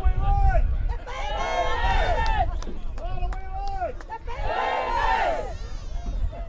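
Spectators shouting and cheering after a try, several voices calling out over one another, louder about two seconds in and again about five seconds in.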